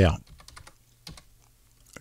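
Typing on a computer keyboard: a few quiet, irregularly spaced keystrokes as a short word is entered.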